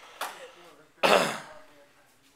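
Throat clearing: a faint rasp near the start, then a louder, harsher one about a second in that falls in pitch.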